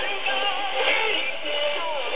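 Music with a singing voice from a Tibetan-service shortwave broadcast on 6025 kHz, heard through an AM communications receiver, with the narrow, muffled sound of AM reception.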